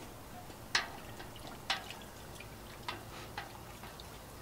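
Four light metal clinks, spread unevenly, as a long spoon and the lid knock against a stainless steel brew kettle.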